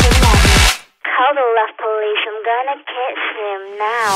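Electronic dance music with a beat cuts out just before a second in. A high-pitched voice follows, sounding thin and narrow like a telephone line, for about three seconds until the music comes back.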